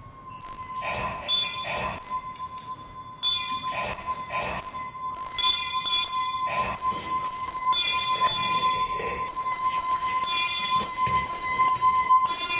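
Live electronic music: metallic, bell-like electronic strikes over a steady high tone. The strikes come in about half a second in, recur roughly every second, and grow denser and louder toward the end.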